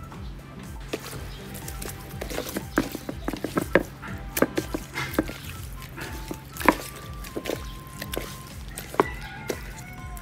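A hand mixing salt into raw fish steaks in a bowl: irregular wet squishing and sharp taps of fish and fingers against the bowl, starting about two seconds in and going on until near the end, over steady background music.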